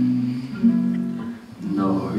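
Instrumental introduction of a slow waltz played on plucked strings: a melody of held notes changing about every half second, with a brief dip about one and a half seconds in.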